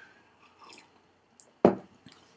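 A man's faint mouth noises during a pause, then a short, sharp throat sound a little over a second and a half in, just after he has cleared his throat.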